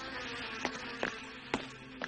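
Buzzing, hissing magic sound effect that starts abruptly, with a slowly falling tone and three sharp clicks about half a second apart, as figures vanish by magic.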